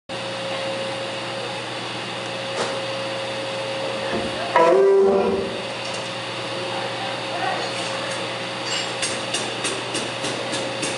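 Live band's amplifiers humming steadily on stage between songs, with a brief loud electric guitar chord about halfway through and quick light clicks near the end.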